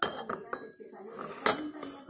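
Porcelain teacup and saucer clinking as they are handled. There are two sharp clinks, one at the start and another about a second and a half in.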